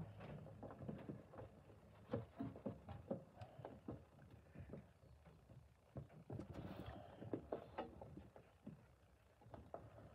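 Hands crumbling and pressing damp, dark casting sand into a small metal mould frame in a stainless steel tray: faint, irregular soft crunches and light taps.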